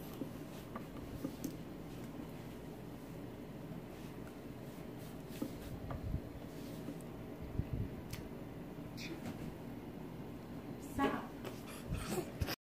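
Mr. Coffee espresso machine's steam wand steaming milk in a glass jar, a steady low rumbling hiss with a few light clicks and knocks; the knocks are louder near the end.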